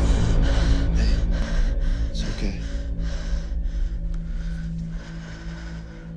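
Tense horror score with a loud low drone, under quick, breathy strokes and a sharp gasp a little after two seconds in. It fades toward the end.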